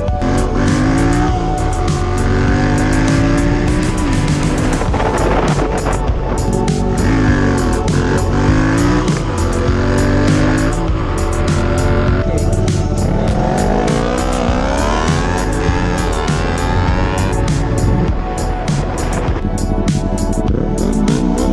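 Motorcycle engine accelerating, its pitch climbing and dropping back several times as it shifts up, over background music with a steady beat.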